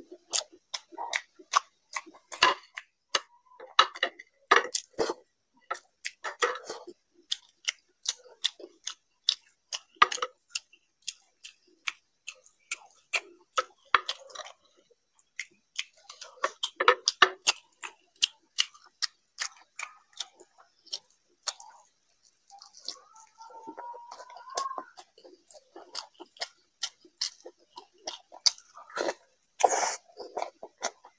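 Close-miked open-mouthed chewing of mughlai paratha with curry: rapid wet clicks and lip smacks, irregular and ongoing. A short wavering hum-like mouth sound comes about two-thirds of the way through.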